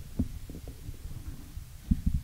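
Handling noise from a table microphone: a few scattered low thumps and bumps as it is moved and adjusted, the loudest near the end.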